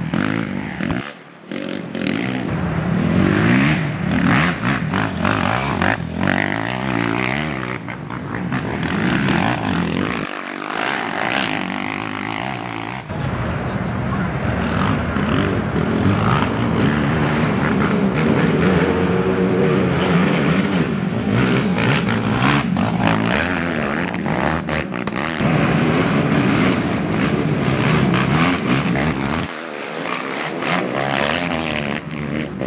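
Racing ATV engines revving hard and easing off in turn as quads power past, heard across a string of short clips. The sound drops out briefly about a second in, near ten seconds and at the end.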